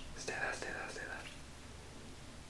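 A person whispering faintly, for about a second.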